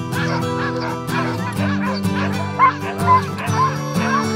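A team of sled dogs in harness yipping, whining and barking, many short overlapping calls, over acoustic guitar music.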